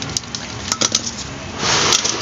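A few light metallic clicks and clinks as hand tools (pliers) and a power cord are picked up and set down on a paper-covered work surface, followed by a short rustling scrape near the end.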